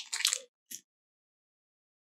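Foil booster-pack wrappers crinkling briefly, with one short rustle just after, then dead silence for over a second.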